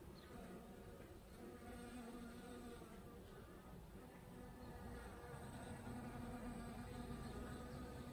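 Bees buzzing as they forage among flowers: a faint, wavering hum that swells and fades as they move and grows a little louder near the end.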